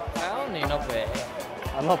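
Men's voices over background music, with scattered short sharp knocks.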